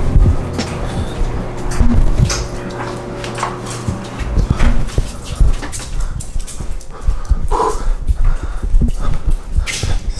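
Irregular knocks and thumps of walking and handling while laundry is carried. A dog makes a short whine about three quarters of the way through.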